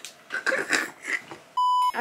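A woman laughing, cut off about a second and a half in by a short, loud, steady beep of the kind used as a censor bleep.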